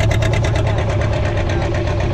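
Boat engine running with a steady low hum and a rapid, regular ticking that fades out about halfway through.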